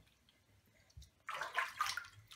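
Bath water splashing in a tub as a toddler moves in it, starting a little past halfway through after a near-silent first second.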